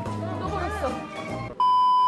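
Music and voices, then, about one and a half seconds in, a loud, steady, high test-tone beep that comes with a colour-bar glitch transition and cuts off suddenly after about half a second.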